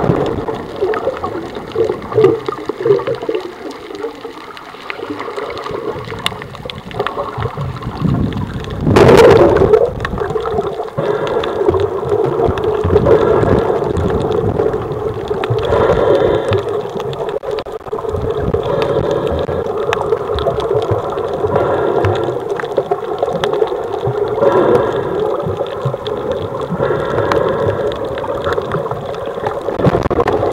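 Underwater sound from a camera moving through the water: a steady gurgling water noise, with one loud rush about nine seconds in.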